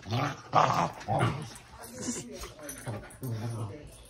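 Dogs growling in short bursts during rough play-fighting: three louder growls in the first second and a half, then softer ones.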